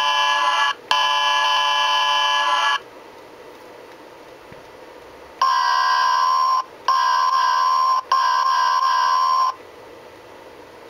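Diesel locomotive horn sound samples played by an MRC sound decoder through a model locomotive's small speaker, two different horns in turn, each a chord of several steady tones. The first horn gives a short blast and then a longer one that stops about three seconds in; after a pause with only hiss, the second horn sounds three blasts of about a second each, close together.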